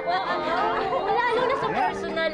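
Several people chattering at once, voices overlapping in lively conversation.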